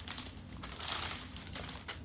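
Thin plastic wrapping crinkling irregularly as it is handled and pulled off a potted plant.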